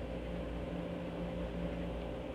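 Steady low electrical or fan-like hum with an even hiss underneath, unchanging throughout; no distinct pen strokes stand out.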